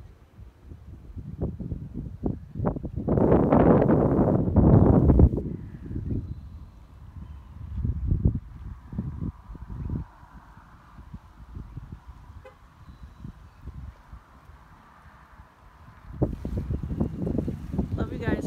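Wind buffeting the microphone in uneven gusts, loudest about three to five seconds in and again near the end, with a faint steady hum underneath through the quieter middle stretch.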